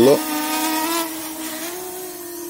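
Dragonfly KK13 GPS quadcopter's brushless motors and propellers whining with a steady pitched hum as it lifts off, growing fainter as it climbs away.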